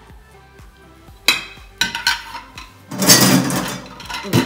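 Kitchenware being handled: two sharp clinks in the first two seconds, then a louder clattering noise about three seconds in that lasts under a second.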